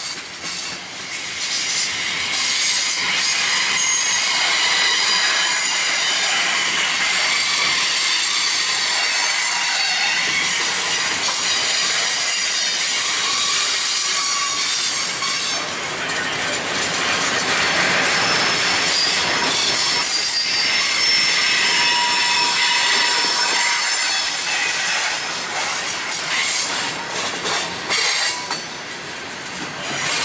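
Freight train rolling past: flatcars loaded with steel pipe and covered hoppers, their steel wheels squealing against the rails in thin, high, wavering tones, with a few clicks of wheels over rail joints near the start and near the end.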